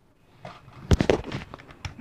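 Hard plastic toy blaster being handled: a few short clicks and knocks, the sharpest about a second in.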